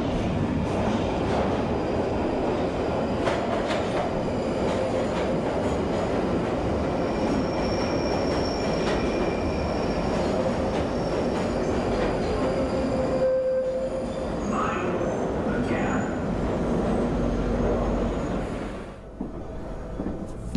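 Subway train running, heard from inside the car: a steady rumble with faint high-pitched squeal from the wheels on the rails.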